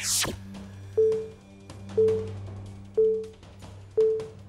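Quiz-show countdown music bed: a short pitched pulse once a second, ticking off the round's clock, over a steady low drone, with a falling whoosh effect right at the start.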